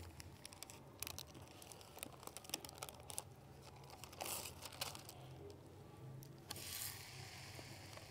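Thin plastic sheet faintly crinkling and rustling in short bursts with small clicks as it is peeled off a thawed paratha.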